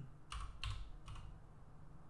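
Computer keyboard being typed on: about three short keystrokes within the first second or so.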